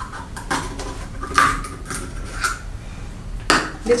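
Metal knife tip scraping and jabbing at the peel-off seal on the mouth of a plastic milk bottle, a handful of sharp clicks and scrapes spread over a few seconds; the seal is stubborn and hard to open.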